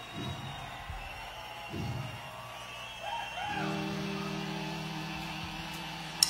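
Lull between songs at a rock concert: crowd noise with a few shouts from the audience, and about halfway through a low note from the stage begins and is held steadily.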